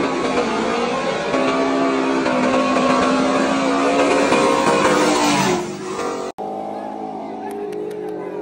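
Loud car engines running hard at high revs, with pitch rising and falling. The sound drops away suddenly about six seconds in, and quieter crowd voices follow.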